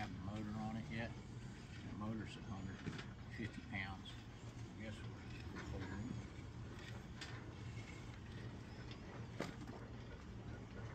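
Faint, indistinct talk over a low steady hum, with a few light clicks in the second half.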